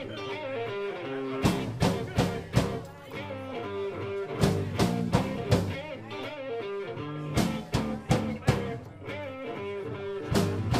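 Live blues-rock band playing an instrumental passage on electric guitar, electric bass and drum kit, with hard accented hits in groups of three about half a second apart, coming round every few seconds.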